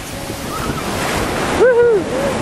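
Surf breaking and washing up a sand beach, the wash swelling over the first second and a half. Near the end a high-pitched voice calls out briefly, the loudest sound.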